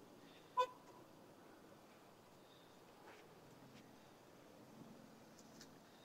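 A single short electronic beep about half a second in, then very quiet outdoor background.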